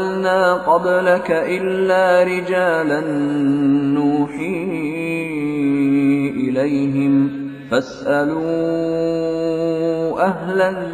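A man reciting the Quran in a slow melodic chant, holding long notes and winding them through ornamented turns, with a short break near eight seconds.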